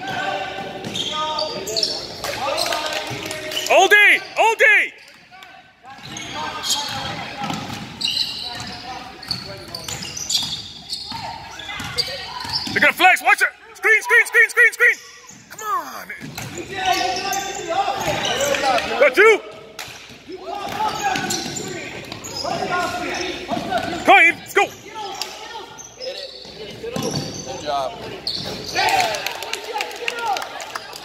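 Youth basketball game in an echoing gym: a ball bouncing on the hardwood court and sneakers squeaking in short sharp chirps, over the voices of players and spectators.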